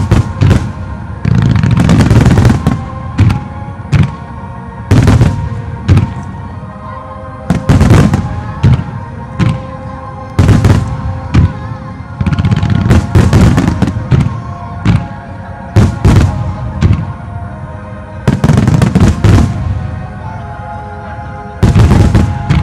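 Fireworks shells bursting over steady music, a sharp bang about every second, with dense runs of rapid bangs a little after the start, around the middle and near the end.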